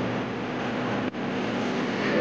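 A steady wash of outdoor street noise with no music playing. It dips briefly about a second in.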